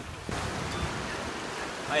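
Steady wash of sea surf with wind, starting abruptly just after the start.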